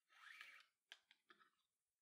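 Very faint rustle of nylon paracord strands being pulled and tightened while weaving a bracelet by hand, followed about a second in by a few soft clicks.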